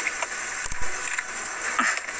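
Someone biting into and chewing a crispy chicken-tender wrap with bacon, with a few soft knocks about two-thirds of a second in, over a steady hiss.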